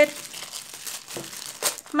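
Clear plastic bag crinkling and rustling as hands pull cold porcelain clay out of it, with a few sharper crackles near the end.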